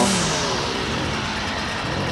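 Petrol string trimmer engine coming down from a high rev just after the start, then running steadily at lower speed with a noisy, even sound.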